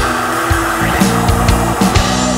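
Rock band playing an instrumental passage: drum kit strikes land roughly every half second over held bass and keyboard notes.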